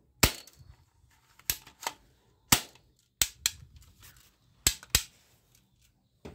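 Hand-held plastic toy gun's mechanism snapping sharply as it is worked, about eight hard clicks, mostly in close pairs.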